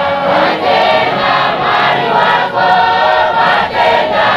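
Large apostolic church congregation singing a hymn together in chorus, many voices at once, with brief breaks between phrases.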